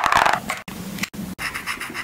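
Crinkling of a thin plastic packaging wrapper crumpled in the hands close to the microphone, loudest in the first half second, then softer crackles and scratches broken by abrupt cuts.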